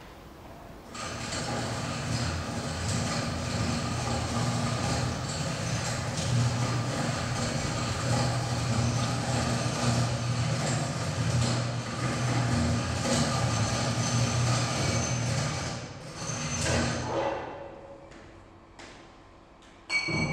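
A machine running steadily with a low hum and a hiss. It starts about a second in, stops near the end with a brief swell, and a sharp click follows.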